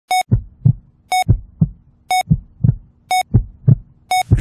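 Hospital heart-monitor sound effect: a short electronic beep once a second, four times, each beep followed by a double heartbeat thump, lub-dub.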